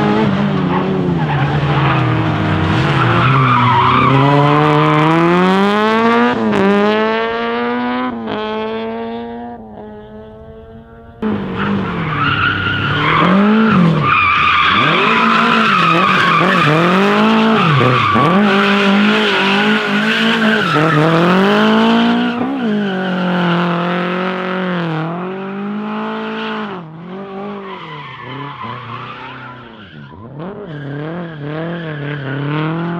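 Rally car engines revving hard. In the first part the pitch climbs through a few gear changes and then fades away. After a sudden jump in loudness about eleven seconds in, a Lada 2107's engine rises and falls over and over as the throttle is worked through a long slide, with tyres squealing and skidding on the concrete.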